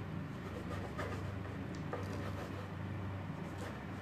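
A knife scraping lightly through soft pizza dough onto baking paper, a few faint scratches about a second apart, over a steady low hum.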